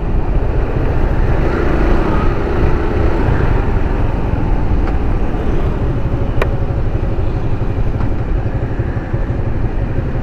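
Motorcycle engine running while the bike rides at low speed, with a steady, heavy low rumble of engine and road noise.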